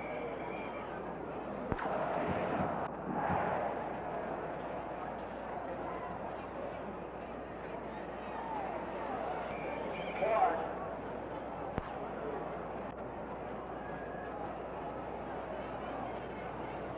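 Indistinct murmur of several voices with no clear words, swelling briefly about two seconds in and again just after ten seconds.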